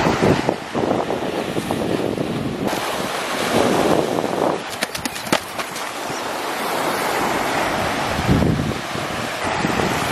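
Wind buffeting the microphone over small waves washing up the beach, the noise swelling and easing unevenly.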